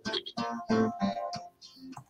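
Acoustic guitar strummed as accompaniment to a folk song, a run of chord strokes about three a second between sung lines.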